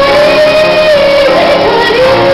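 A woman singing live with instrumental accompaniment: she holds one long high note for about a second, then moves through a short phrase and settles on a lower note near the end.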